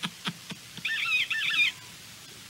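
Cell phone ringtone: a short run of repeated high chirping notes, rising and falling, lasting about a second and starting just under a second in.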